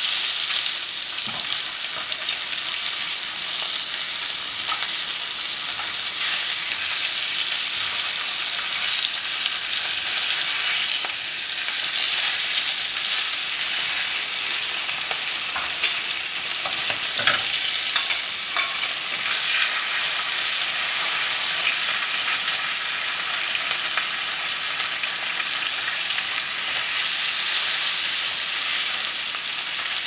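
Rainbow trout pan-frying in a mix of butter and olive oil: a steady sizzle with scattered crackles and pops, a few sharper ones a little past the middle.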